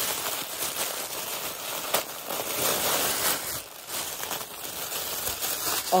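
Tissue paper rustling and crinkling steadily as it is handled and pulled open to unwrap a crocheted toy, with a few sharper crackles.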